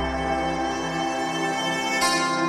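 Slow ambient meditation music: sustained, ringing tones held over a deep low note that fades away about a second in.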